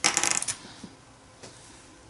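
A quick rattle of small clicks in the first half second as a glue pen is picked up and handled over a journal page, then two faint taps.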